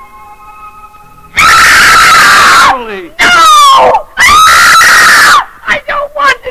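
A few faint held music notes, then about a second and a half in a woman screams very loudly: two long shrieks with a shorter, downward-sliding one between them, then short broken cries near the end. It is a scream of waking from a trance as if from a nightmare.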